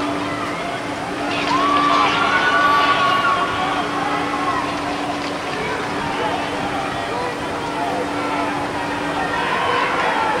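Shouts and calls from players and spectators at a lacrosse game, loudest a second or two in and again near the end, over a steady low hum.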